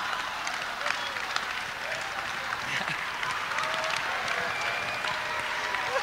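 Audience applauding steadily, with a few voices and some laughter among the clapping.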